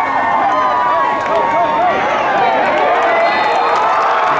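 Football stadium crowd shouting and cheering, many voices overlapping continuously, during a goal-line play that ends in a touchdown.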